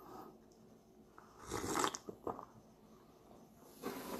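A person sipping beer from a small glass: a short slurp about halfway through, then a small click and faint mouth sounds.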